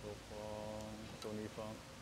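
A person's voice calling out: one held note, then two short calls, with a sharp click between them.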